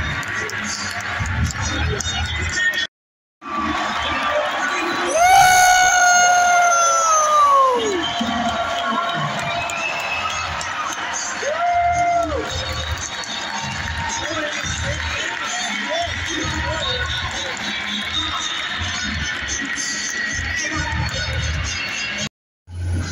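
Hockey arena crowd cheering, with music over the PA. A long horn blast about five seconds in sags in pitch as it dies away, and a shorter blast follows about twelve seconds in. The sound cuts out briefly about three seconds in.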